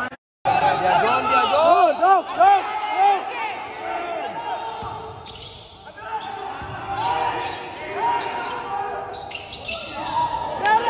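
Basketball shoes squeaking in short bursts on a hardwood gym floor, with a ball bouncing, during a game.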